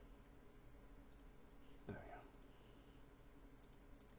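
Near silence with a few faint computer mouse clicks, spread out over the few seconds.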